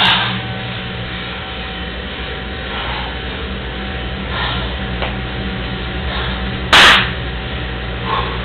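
Two people wrestling on a tiled floor: faint scuffling, then one loud, sharp impact about seven seconds in, over a steady low hum.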